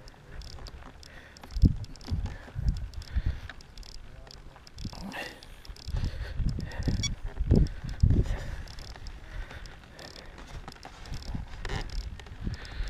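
Irregular low rumbling and bumping of wind and handling noise on a microphone carried across an open field, with faint voices in the distance.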